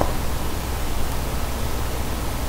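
Steady hiss of a microphone's background noise, with a faint low hum beneath it.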